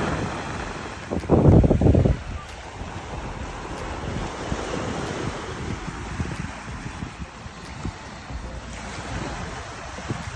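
Sea waves washing with wind blowing on the microphone, and a loud low rush of wind noise a little over a second in.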